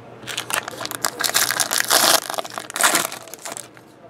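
Foil trading-card pack wrapper crinkling and crackling in the hands as the pack is opened and the cards pulled out. The crackling is loudest about halfway through and again near the three-second mark.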